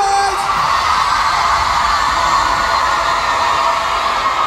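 Large arena concert crowd screaming and cheering in answer to a call to make some noise, a steady wall of high screams. It follows the tail of a man's shouted "noise!" in the first moment.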